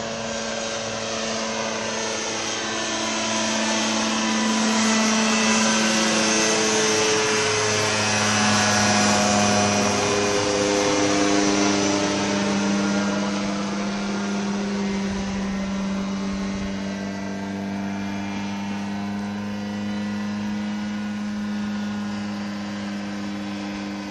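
Weight-shift microlight trike's propeller engine droning as it flies low overhead. It grows louder to a peak in the middle, its pitch dropping slightly as it passes, and then eases off as it climbs away.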